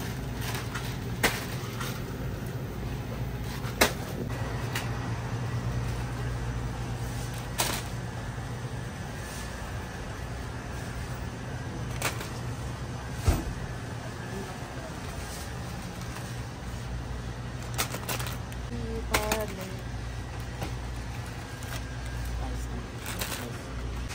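Shop ambience: a steady low hum from refrigerated display cases and air conditioning, broken by a few sharp clicks and knocks, with faint voices around the middle.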